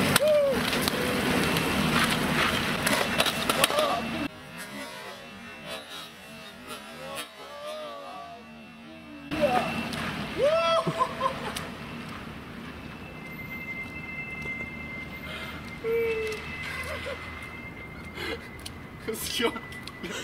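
Kick scooter wheels rolling and splashing over wet asphalt, then a fall onto the wet road followed by a man's short cry. The sound changes abruptly twice, and a steady high tone runs through the second half.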